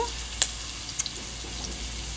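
Minced garlic and sliced red onion sizzling in hot oil in a wok: a steady frying hiss with two sharp pops, about half a second and one second in.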